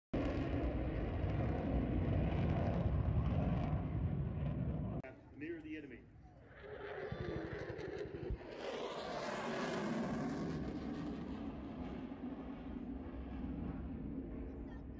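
Deep, loud rumble of a large pyrotechnic wall-of-fire explosion for about five seconds, which breaks off suddenly. After a quieter stretch, a single sharp bang comes about eight seconds in, followed by a broad rushing noise that swells and then slowly eases.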